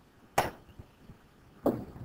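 A stylus tapping on a tablet screen while writing by hand: two short, sharp taps, one about half a second in and one near the end.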